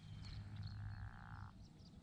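A pickerel frog calling once: a faint, rapidly pulsed croak lasting about a second and a half.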